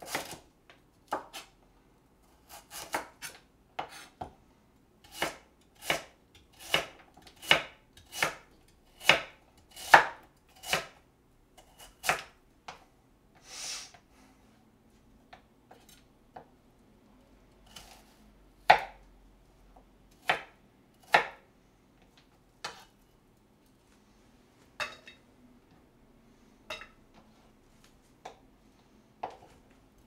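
Kitchen knife slicing through a firm Korean radish and striking a plastic cutting board: sharp chops every half-second to second for the first half, then fewer and further apart.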